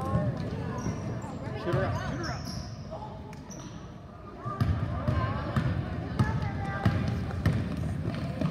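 A basketball dribbled and players' feet thudding on a hardwood gym floor, under the chatter and calls of spectators in an echoing gym. A quieter lull comes about three to four seconds in, and then the dribbling and footfalls pick up again.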